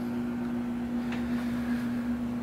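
Hotel-room through-wall air-conditioning unit running with a steady, even hum.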